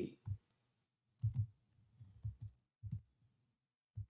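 Soft clicks and taps from a computer keyboard and mouse: a scattered series of about eight to ten short, muffled knocks.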